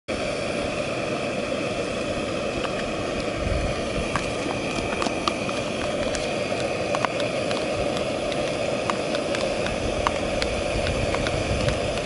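Small backpacking gas stove burner running with a steady rushing hiss under a pot of soup. Light clicks of a metal spoon scraping rice out of a plastic bowl are scattered over it.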